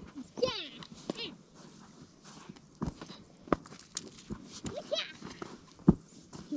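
Children's high-pitched squeals and shouts during play in the snow, with a few short sharp knocks in the middle.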